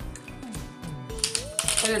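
Background music with a steady beat; a woman's voice comes in near the end.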